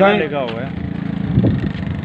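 Men's voices talking over one another in a heated argument, with a low steady hum underneath.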